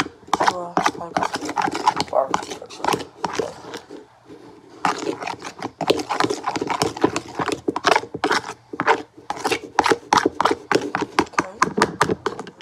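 A plastic spoon stirring sauce in a plastic bowl, clacking and scraping against the sides in quick strokes of about three or four a second, with a brief lull near the middle.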